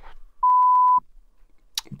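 A censor bleep: one steady, high, pure beep about half a second long, starting about half a second in and cutting off sharply. It blanks out a word in the speech.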